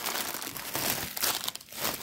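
Plastic mailer bag crinkling and rustling irregularly as hands tear it open and pull it off a cross-stitch kit in a clear plastic bag.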